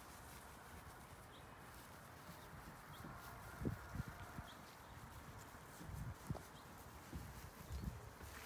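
Quiet outdoor ambience with a few soft, low thumps spread through the middle and late part, and occasional faint high chirps.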